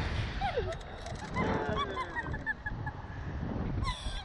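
A rider's high-pitched shrieking laughter: a falling squeal early on, then a quick run of short squeaks. Low, rumbling wind noise runs underneath.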